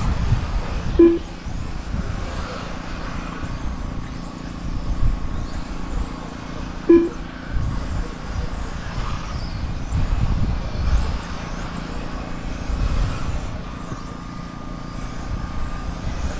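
1/10-scale electric front-wheel-drive RC touring cars racing, their motors making a faint high whine that rises and falls as they speed up and slow down, over an uneven low rumble. Two short beeps sound, about a second in and about seven seconds in.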